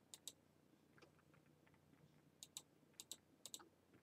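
Faint computer mouse clicks over near silence: two near the start, then three quick press-and-release pairs in the second half.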